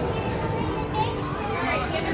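Children's voices talking and playing over steady crowd chatter.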